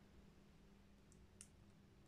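Near silence: room tone with a faint steady hum and one small, brief click about one and a half seconds in.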